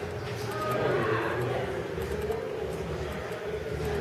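Indistinct voices of people talking in a large room with a wooden floor, with a few light clicks like footsteps.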